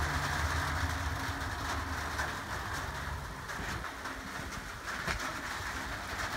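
Passing road traffic: a vehicle's engine hum dies away over the first couple of seconds, leaving a steady, fainter traffic hiss.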